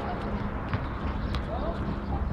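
Outdoor ambience: a low, uneven rumble with faint, indistinct distant voices and a couple of light clicks.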